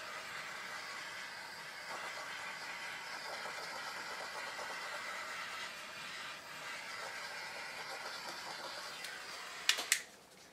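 Handheld butane torch burning with a steady hiss as it is played over wet acrylic paint to bring up cells, ending with two sharp clicks near the end.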